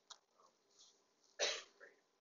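A person coughing once, briefly, about one and a half seconds in, in an otherwise quiet room.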